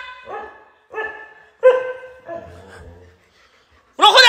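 A dog barking in short, high-pitched barks, three in the first two seconds, then a fainter, drawn-out one: impatient barking while it waits for a treat.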